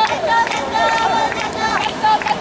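Spectators shouting encouragement: many short, high-pitched yells overlapping and following one another quickly.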